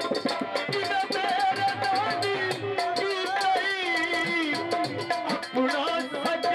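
Folk dance music with a steady drum beat under a wavering, ornamented melody line, played loud for dancing.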